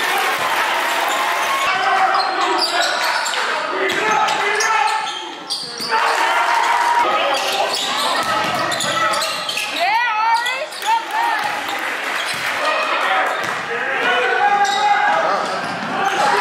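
Live basketball game sound in a gym: the ball bouncing on the hardwood court, amid the voices of players, coaches and spectators.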